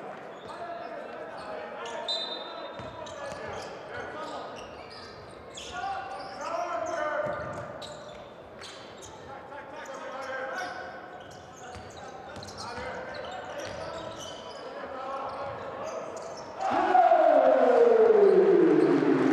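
Basketball game sound in a large echoing hall: a ball dribbling and sneakers squeaking on the hardwood court, with players' and coaches' shouts. Near the end, just after a made three-pointer, the sound jumps to a loud cheer with a long call falling in pitch.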